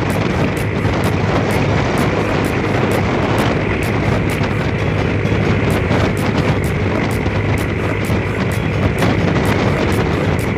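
A vehicle driving at speed, heard from on board: a steady loud rush of engine, road and wind noise with a low hum and a faint regular ticking about three times a second.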